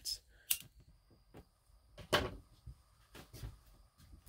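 A few sparse light knocks and clicks from lab gear being handled on a tabletop, the loudest about two seconds in.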